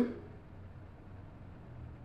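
Faint, steady background hiss with no distinct sound events: room tone.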